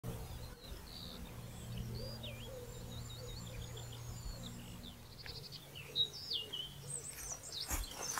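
Small songbirds singing and chirping, many short varied notes, faint over a steady low background hum. A brief thud comes just before the end.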